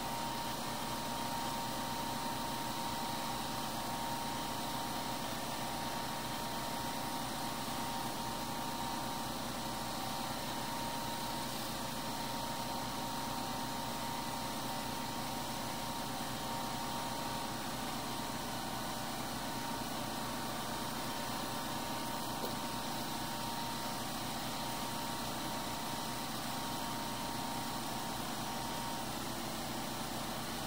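Steady mechanical hum and hiss with a thin, constant high whine that fades out near the end.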